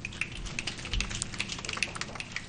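Scattered applause from a few people in the room: irregular sharp claps, several a second.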